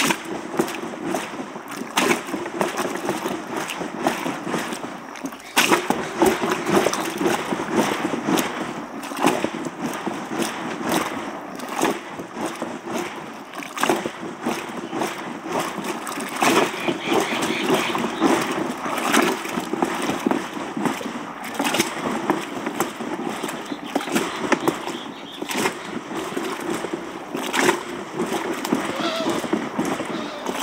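A wooden plunger pushed up and down in a tall churn of milk, splashing and sloshing stroke after stroke as the milk is hand-churned to separate the butter.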